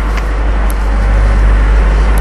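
Steady loud low rumble with an even hiss, a continuous background noise.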